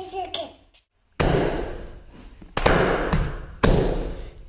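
Three loud, sudden thumps about a second and a half apart, each dying away over about a second, after a brief voice at the start.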